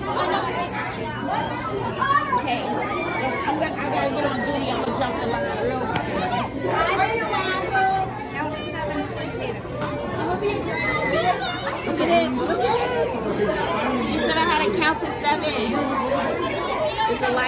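Indistinct chatter of many voices talking over one another in a large indoor hall.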